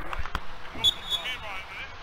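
Distant voices of football players calling out across an open grass pitch, with two short dull thuds in the first half second like a ball being kicked.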